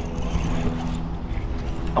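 A steady low hum with a rumble under it and no distinct event; the source of the hum is not clear.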